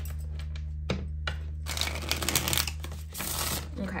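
A deck of tarot cards being shuffled by hand: two short taps, then a rapid flutter of cards lasting about a second, and a second shorter flutter near the end.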